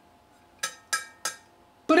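Three light metallic clinks, each with a short ring, from the cut half of a pre-1968 Revere Ware copper-clad stainless-steel skillet being handled. They come about a third of a second apart around the middle.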